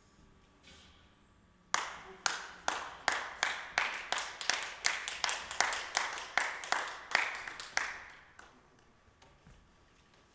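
A single pair of hands clapping in an even rhythm, about two and a half claps a second, each with a short echo. The claps start sharply about two seconds in and stop about eight seconds in.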